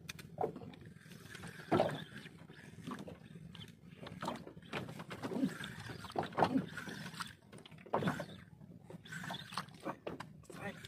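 Short, irregular grunts and exclamations from an angler fighting a freshly hooked fish on a hard-bent spinning rod, mixed with rod and boat handling knocks.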